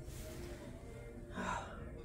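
Quiet background music with held notes, and a short intake of breath about one and a half seconds in.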